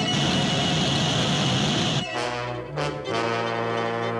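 Cartoon orchestral score led by brass. For the first two seconds a dense rushing fire-blast sound effect from the dragon's flame covers the music, then brass chords play on alone.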